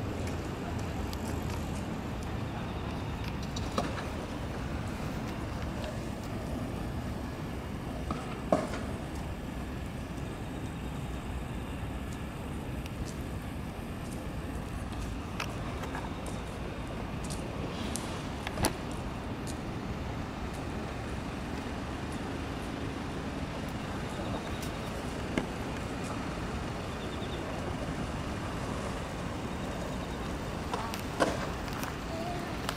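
Steady city traffic noise, with a few brief sharp knocks scattered through it.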